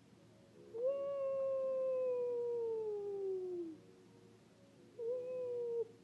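A baby's long vocal sound, falling slowly in pitch over about three seconds, then a shorter, steadier one near the end.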